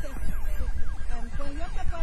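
A siren yelping in quick falling sweeps, about four a second, with faint voices and a low rumble underneath.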